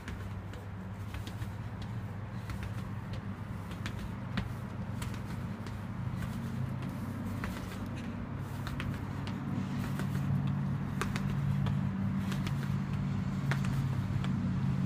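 Footsteps of a person running up stone stairs, sharp light taps a few a second, over a steady low hum that slowly grows louder.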